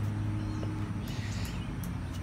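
Steady low hum in the outdoor background, with no speech.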